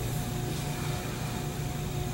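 Steady room tone: an even low hum with a faint steady tone over it, and no distinct handling sounds.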